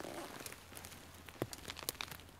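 Hands working in dry forest-floor litter of needles and twigs under tree roots to pull out a small mushroom: faint crackling and rustling, with two small sharp snaps or clicks in the second half.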